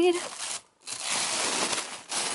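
Tissue paper and shredded paper packing crinkling and rustling as hands push them aside inside a parcel box. It follows the drawn-out tail of a spoken word and a brief pause just before a second in.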